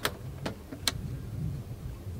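Three sharp clicks, about half a second apart, from the latch and hinged lid of a pontoon boat's helm glove box being opened, over a steady low rumble.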